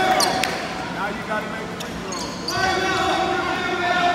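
A basketball bouncing a few times on a hardwood gym floor, with voices calling out in the echoing gym.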